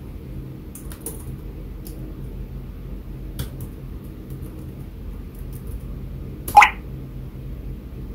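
A few faint computer-keyboard keystrokes over a steady low hum, with one brief, louder, sharp sound about six and a half seconds in.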